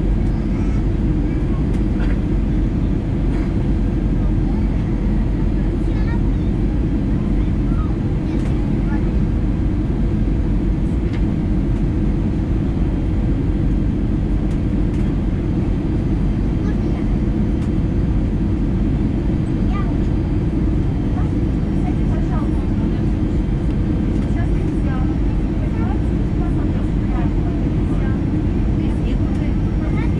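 Steady cabin noise inside an Airbus A320-214 on its landing approach: its CFM56 turbofan engines and the airflow make a constant low rumble with a faint steady hum above it.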